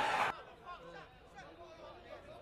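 A long, loud held shout, the commentator's drawn-out goal call, breaks off with a falling pitch right at the start, followed by a brief noisy rush. After that only faint background voices chattering remain.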